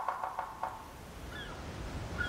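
A rapid rattling run of pitched notes lasting under a second, then a couple of short, high, bird-like chirps over a low rumble of ocean surf that builds in the second half.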